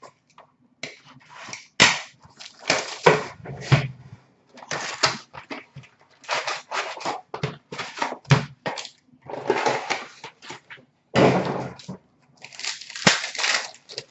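An Upper Deck hockey card retail box being torn open and its wrapped packs pulled out and handled: repeated irregular bursts of tearing cardboard and crinkling wrappers.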